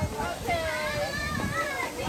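Children's voices chattering, indistinct talk and calls from a group of kids.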